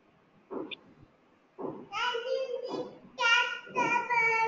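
A high-pitched voice, like a child's, starts about a second and a half in and makes several drawn-out utterances with long, steady-pitched stretches. These run to the end.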